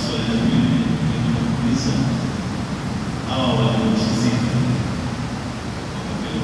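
A man's voice speaking through a handheld microphone, in two stretches, over a steady background hiss.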